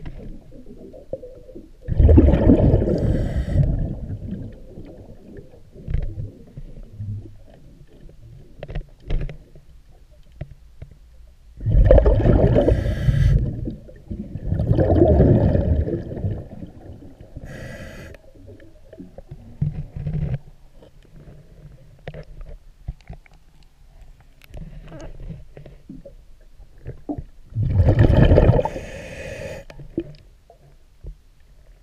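Underwater: a diver's regulator exhaling, four rushing bursts of bubbles about two seconds each, with fainter scattered clicks and knocks against the hull between them.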